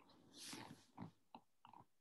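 Near silence, with a faint short hiss about half a second in and a few soft clicks after it.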